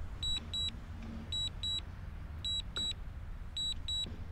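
Return-to-home alert from a DJI Mini 2's remote controller: short, high double beeps repeating about once a second, signalling that the drone is flying itself back to its home point.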